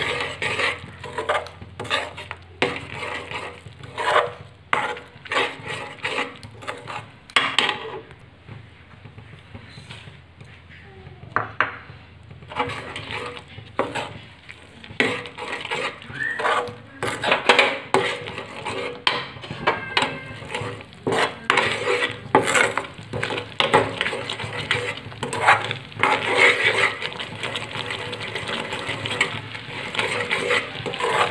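A spoon scraping and knocking against a metal kadhai in quick, irregular strokes as it stirs a bubbling mixture of melted sugar-candy toys, coconut and ground nuts cooking down into barfi batter.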